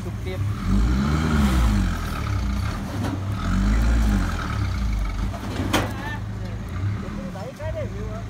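Small light truck's engine revving up and back down twice as it strains to drive out of soft mud where it is stuck to the axle, with a hiss rising alongside each rev. A single sharp click comes about six seconds in, and the engine sound drops off shortly after.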